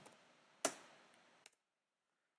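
A single sharp computer-mouse click about two-thirds of a second in, then a much fainter tick around a second and a half, with near silence between.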